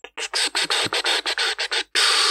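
Quick scratchy rubbing strokes, about seven a second, like a computer mouse being slid rapidly back and forth on a desk or mouse pad.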